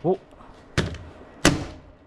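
Two hammer blows, about two-thirds of a second apart, on the plastic sleeve of a HiKOKI dust-extractor hose wrapped in a plastic bag. The blows are breaking the old, cracked sleeve so it can be removed from the hose.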